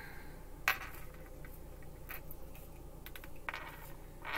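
Tarot cards being handled at a table: a sharp click about a second in, then a few fainter clicks and taps.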